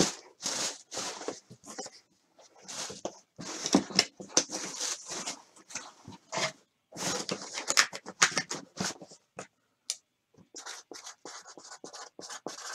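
Cardboard box being handled and opened: irregular bursts of scraping, rustling and tapping.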